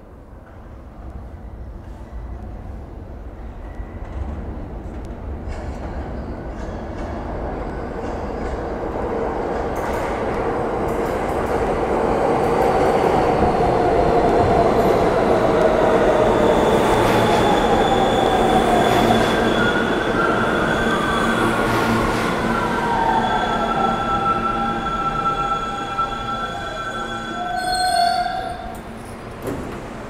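New York subway R160B train with Siemens propulsion arriving at the station: a rumble that grows louder for the first dozen seconds as it enters, then a whine from the train that falls in pitch as it brakes. It comes to a stop near the end.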